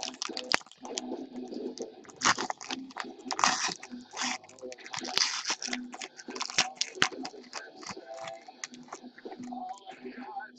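Foil trading-card pack wrapper being torn open and crinkled by hand, in irregular bursts of rustling and tearing.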